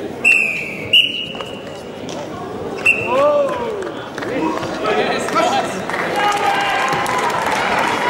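Echoing sports-hall sound: three short, shrill whistle-like tones in the first three seconds, then a drawn-out call that rises and falls, and a mix of voices after it.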